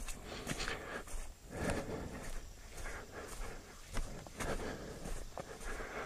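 Footsteps of a person walking on a dirt road, about two steps a second.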